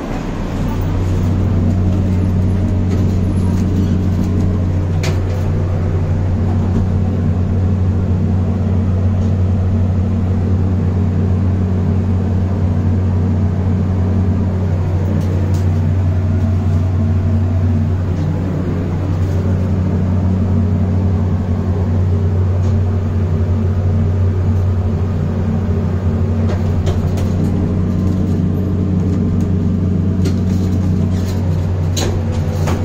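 Steady, loud low hum inside an OTIS N6C passenger lift car, with faint clicks here and there.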